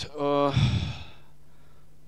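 A man's brief voiced hesitation followed by a sigh, his breath puffing onto a handheld microphone about half a second in.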